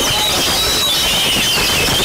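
Oriental magpie-robin (kacer) and other caged songbirds singing together: many high whistled notes and short glides overlapping over a steady noisy din.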